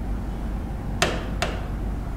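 Two sharp taps about half a second apart, the first louder: a hand knocking against the glass of an interactive display board while writing on it, over a steady low hum.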